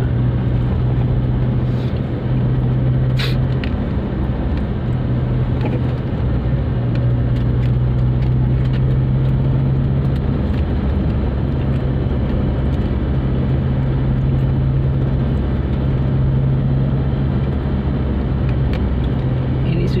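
Steady car-cabin noise while driving at low speed: a low engine and road hum over even tyre noise. A single sharp click about three seconds in.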